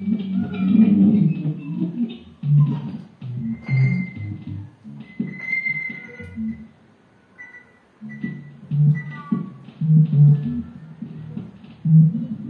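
Free-improvised music on double bass and two guitars: low bass notes under sliding, gliding high tones and a held high note, thinning to a quiet moment about seven seconds in before picking up again.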